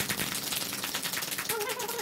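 Drum roll sound effect: a rapid, even run of drum strokes.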